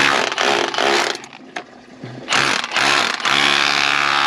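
Milwaukee cordless rotary hammer chiselling concrete off the top of a PVC drain pipe. It runs in three bursts: about a second at the start, a short burst past the middle, and a steady run from just after three seconds on.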